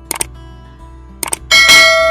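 Subscribe-button animation sound effects over background music: a quick double mouse click near the start, another double click a little past the middle, then a loud bell ding that rings out.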